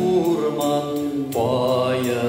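A man singing a slow melody into a microphone over instrumental backing, holding long notes. About one and a half seconds in he steps up to a higher sustained note.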